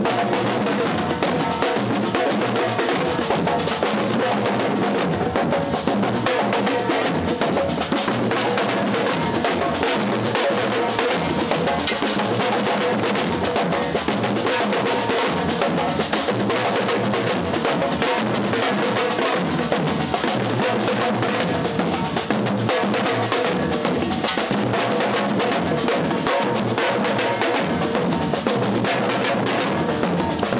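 A batucada street drum band playing a dense, steady groove: shoulder-slung snare-type drums struck with sticks over larger bass drums, with no pause.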